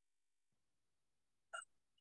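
Near silence, with one brief catch of breath from the speaker about a second and a half in.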